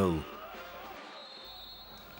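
Faint, steady background noise of an indoor sports hall, with no clear ball impacts.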